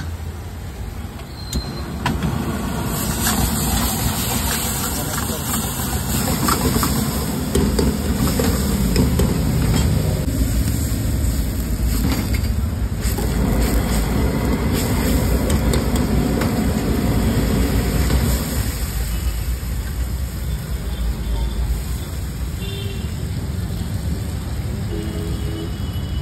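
Street-stall cooking noise: a steady low roar, with a steel ladle clinking and scraping against a wok and voices in the background.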